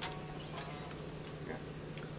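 Quiet studio room tone: a low steady hum with a few faint, scattered ticks.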